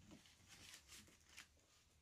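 Near silence, with a few faint soft rustles from gloved hands scooping spilled acrylic pouring paint on the canvas.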